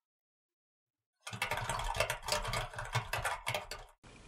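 Dead silence for about the first second, then a rapid clatter of clicks from a slide-transition sound effect, which cuts off just before the end.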